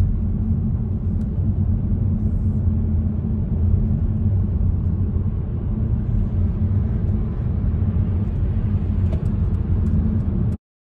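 Steady low rumble of a car driving on a motorway, heard from inside the cabin: tyre and engine noise.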